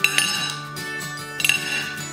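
Metal knife and fork clinking against a china dinner plate, twice: a sharp clink with a short ring at the start and another about a second and a half in, over background music.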